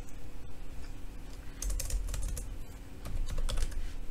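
Computer keyboard typing: two short bursts of keystrokes, the first about one and a half seconds in and the second near the end.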